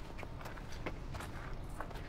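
Footsteps on a dirt yard: a few soft, irregular steps over a low, steady background rumble.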